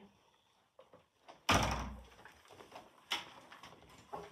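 A door banging shut: one loud bang with a heavy low thud about a second and a half in, then a smaller sharp knock a little over a second later.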